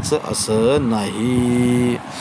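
A man's voice drawing out a long vowel: a rising-and-falling glide, then one steady held note for most of a second near the end, in a drawn-out, sing-song way of speaking.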